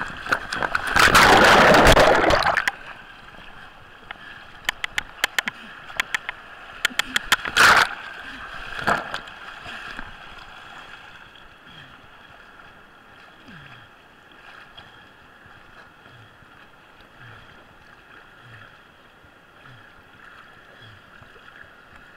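Whitewater river splashing over a camera riding at the surface of the rapids: a loud rush in the first couple of seconds, sharp splatters and taps of water on the camera up to about nine seconds in, then a steadier, quieter rush of the flowing river.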